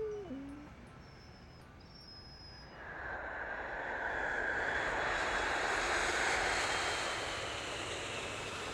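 A dog gives one short whine that falls in pitch. Then, from about three seconds in, a jet airliner on its landing approach grows louder, peaks, and eases slightly near the end.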